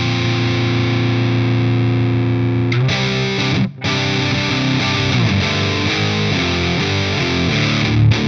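High-gain distorted electric guitar: a PRS CE24's bridge humbucker through a Synergy DRECT Dual Rectifier-style preamp, in its red mode. Low chords ring out for the first few seconds, the sound is choked off briefly about three and a half seconds in, then the playing moves on through changing notes.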